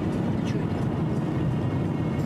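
Steady low rumble of a moving car's engine and tyres, heard from inside the cabin through a dashboard camera's microphone.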